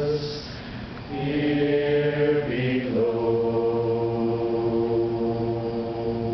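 A group of men singing a hymn in unaccompanied harmony, holding a chord, pausing briefly for breath about half a second in, then starting a new chord that shifts to another near the middle and is held.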